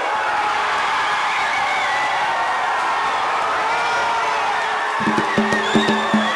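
Boxing crowd cheering and shouting at a knockout, many voices overlapping. About five seconds in, music with a low drone and a percussion beat starts under the cheering.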